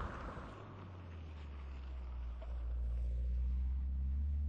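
Turbocharged Mini Cooper S convertible driving away on a gravel road, its engine and tyre noise fading. From about a second in, a steady low rumble builds up and holds.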